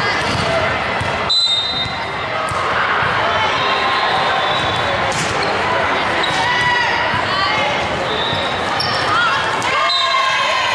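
Volleyball rally on a hardwood court in a large echoing gym: a ball being hit, with sharp smacks of contact, under a steady din of players' calls and voices.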